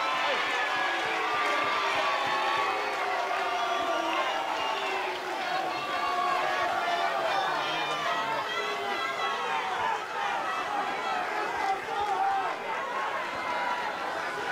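Rugby league crowd in the stands: many voices shouting and chattering over one another at a steady level, with no single voice standing out.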